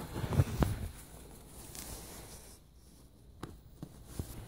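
Soft handling noise of hands working at the gown's fabric and hooks: a few dull knocks and rustles in the first second, then a faint hush with a couple of small clicks near the end.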